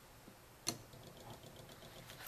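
A single sharp click about two-thirds of a second in, as a metal folding knife is set down among other knives on a cloth-covered table, over a faint low hum.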